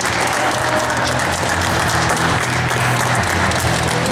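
Audience applauding a boxing bout's decision as the winner's hand is raised, steady clapping throughout.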